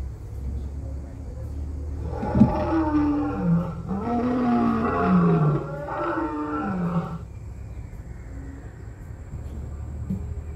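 Recorded dinosaur roar played through the speaker at an animatronic Yangchuanosaurus: a growling roar that starts about two seconds in and swells several times with rising and falling pitch for about five seconds, then cuts off. A steady low rumble runs underneath.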